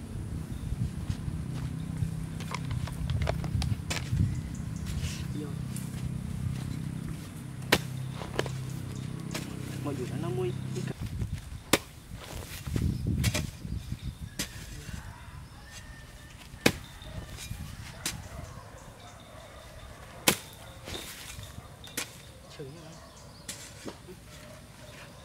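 Long-handled hoe chopping into grassy soil: sharp strikes at irregular intervals of one to a few seconds. A steady low hum runs underneath and stops about eleven seconds in.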